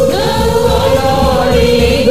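A group of voices singing a Christian worship song in long held notes over a steady low beat.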